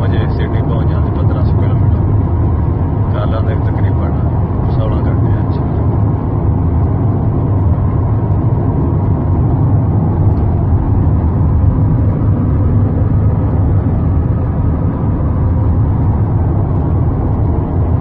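Steady low road and engine rumble heard inside a car cruising at highway speed.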